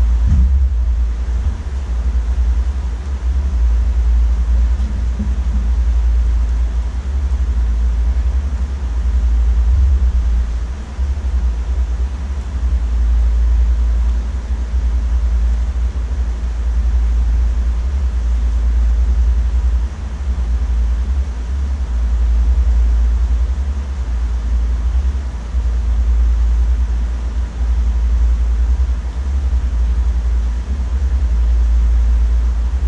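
A steady deep rumble that swells and dips slightly, with little else heard above it.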